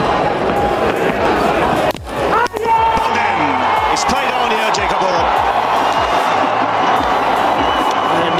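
Cricket stadium crowd noise that swells into cheering as a batsman is bowled and the stumps are broken. A brief dip and sharp knock come a couple of seconds in.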